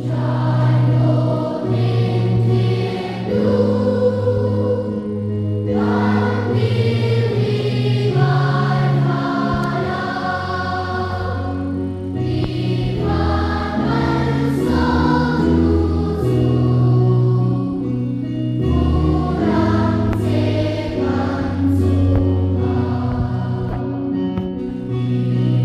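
Large choir of children and young people singing a hymn in Mizo over a sustained keyboard accompaniment, with short breaths between phrases every few seconds.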